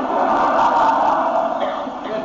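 A congregation laughing together, many voices at once, easing off slightly near the end.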